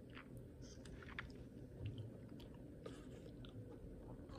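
Faint mouth noises of someone tasting a sip of thin, drinkable yogurt: soft smacking and swallowing, with a few scattered small clicks.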